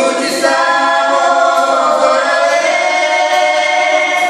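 A man and a woman singing together in a live duet, holding long sustained notes.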